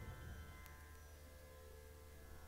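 Near silence: a faint steady hum from the sound system, with a short click less than a second in.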